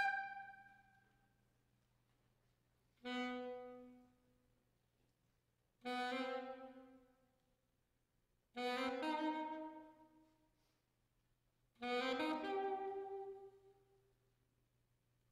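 Concert wind band: a held chord dies away, then four separate chords, each sounded and left to fade with the hall's reverberation, with pauses between them.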